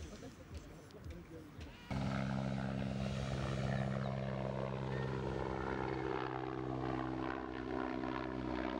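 Helicopter flying overhead: a steady engine drone with a fast beat of rotor blades, cutting in suddenly about two seconds in. Before it, faint voices.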